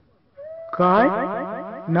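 Electronic sound effect of echoing, sweeping tones: a faint rising tone about a third of a second in, then two loud bursts of held pitch, the second near the end.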